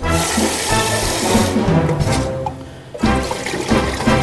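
Tap water running into a plastic bowl as rice is washed by hand; the rushing water is loudest for about the first second and a half, then fades away. Background music plays underneath.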